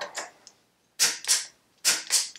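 Click-type torque wrench clicking on a motorcycle's bottom fork clamp bolt: sharp clicks in pairs about a third of a second apart, twice, the sign that the set torque of 22 lb-ft has been reached.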